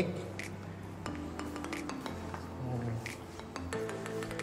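Background music with held low notes and a light clicking beat about every two-thirds of a second.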